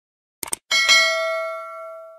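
A quick double click, then a notification-bell chime sound effect that rings several clear tones and fades over about a second and a half. It sounds as the animated cursor clicks the subscribe bell icon.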